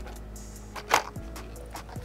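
Faint background music with a single sharp plastic crackle about a second in, as a plastic container holding homemade fishing lures is handled and opened.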